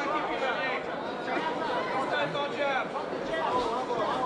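Spectators' chatter: many voices talking over one another, with no single voice standing out.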